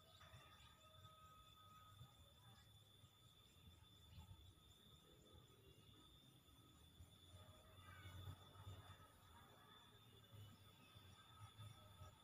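Near silence: faint outdoor background with a low rumble and two faint, steady high tones.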